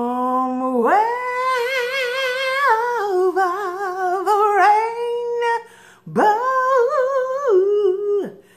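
A woman singing a slow, wordless melody with a strong vibrato, drawing each note out in two long phrases with a short breath about six seconds in.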